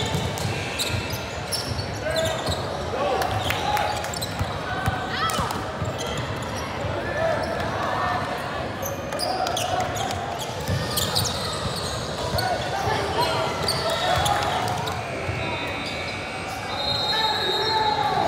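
A basketball bouncing on a hardwood gym floor during play, among the voices of players and spectators, echoing in a large gym. A few short high squeaks cut through near the middle and end.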